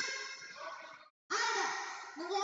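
Many children's voices chattering and calling out at once, echoing off hard walls. The sound cuts out completely for a moment about a second in.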